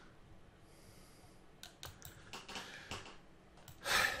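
About half a dozen scattered computer mouse and keyboard clicks in the second half, followed by a short breath near the end.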